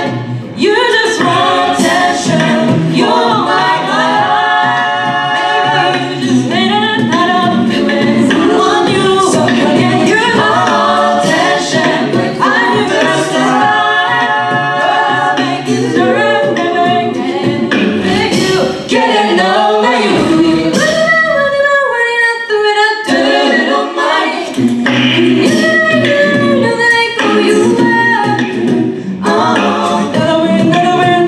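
A cappella vocal group singing an upbeat pop arrangement: a lead voice over close-harmony backing voices and a sung bass line. The lead passes from a man to a woman partway through, and the low bass part drops out briefly about twenty seconds in.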